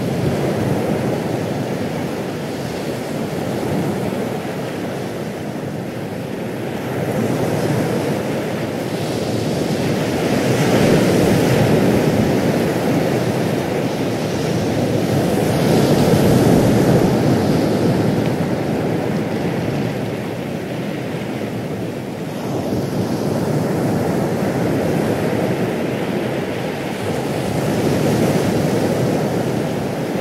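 Ocean waves washing in: a steady rush of surf that swells and eases every few seconds.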